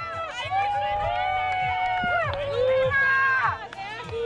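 Women cheering runners on: several high, long drawn-out shouts, one after another, without clear words.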